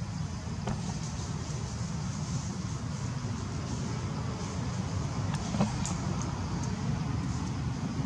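Steady low outdoor rumble with a faint hiss above it, broken by a few soft clicks, the sharpest a little past halfway.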